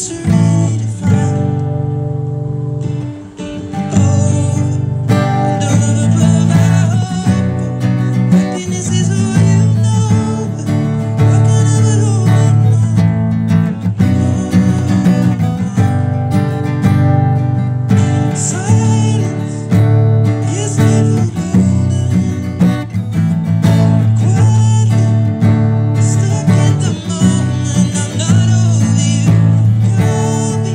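Acoustic guitar strummed in a steady down-up pattern, changing through chords such as B minor, A and G, with a brief drop in level about three seconds in.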